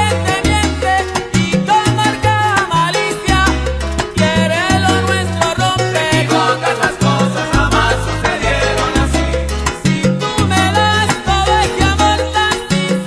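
Salsa music in an instrumental passage with no singing. A bass line moves in short held notes under a busy melody and percussion.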